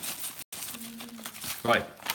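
Plastic packet of dark brown sugar crinkling as it is shaken and tipped out into kitchen scales. The audio cuts out completely for a split second about a quarter of the way in.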